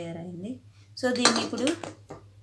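Metal clinking and scraping on a small steel plate, loudest in a burst from about a second in to near the end, mixed with a woman's voice.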